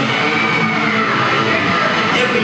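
Live rock band playing loud, with electric guitar to the fore; a high held note bends up and falls away over the first second and a half.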